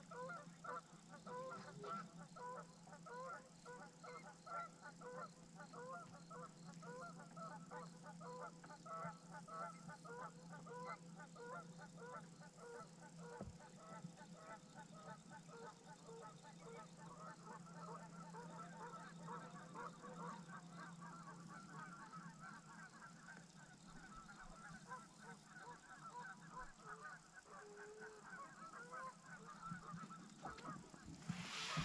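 A faint, continuous chorus of many short, overlapping animal calls, with a steady low hum underneath.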